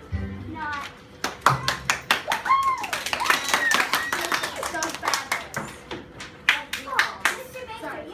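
A small group of children clapping, uneven claps starting about a second in and dying away near the end, with children's voices calling out over it.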